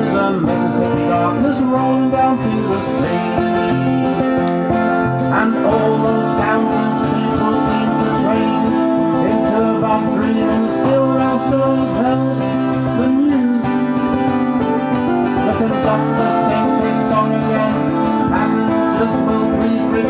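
Steel-string acoustic guitar played alone, with steady chord changes: an instrumental break between sung lines of a country-folk song.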